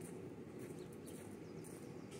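Quiet outdoor ambience: a steady low background rumble with faint, brief high-pitched chirps.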